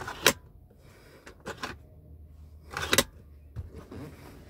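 Sharp plastic clicks from a car's rear centre armrest being handled. One comes about a quarter second in as the cup-holder cover is moved, a fainter one comes near the middle, and a louder clack comes about three seconds in as the armrest is folded up into the seatback. A faint low hum runs beneath.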